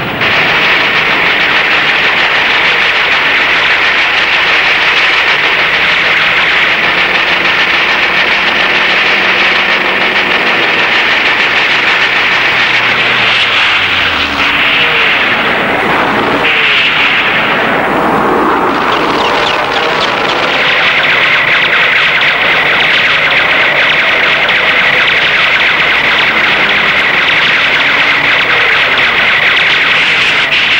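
Loud, steady drone of propeller aircraft engines. About halfway through, a plane passes with its pitch falling away, followed by a sweep that dips and then rises again.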